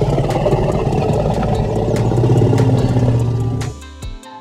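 A walrus calling: a low, pulsing growl lasting nearly four seconds that stops shortly before the end, over background music.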